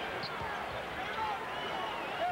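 Arena crowd murmur with a basketball being dribbled on the hardwood court during live play.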